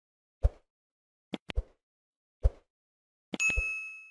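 Subscribe-overlay sound effects: a few short soft clicks as the animated like button is pressed, then a single bell ding near the end that rings for about half a second.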